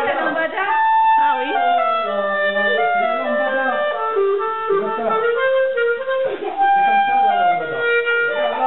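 Clarinet played solo, a melody of held notes that change every half second or so.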